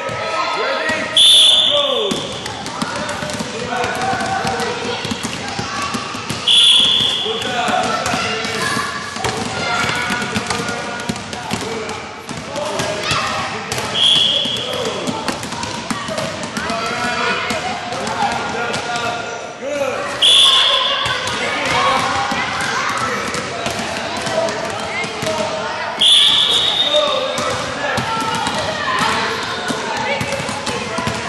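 Basketballs bouncing on a gym floor, with voices in a large, echoing hall. Five short, loud, high-pitched shrill tones break through, roughly every six seconds.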